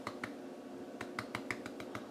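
Light clicks of a plastic spice jar of ground cinnamon being shaken and tapped over a blender: one click early, then a quick run of about six clicks about a second in.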